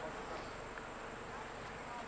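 Insects buzzing steadily, with no sharp events.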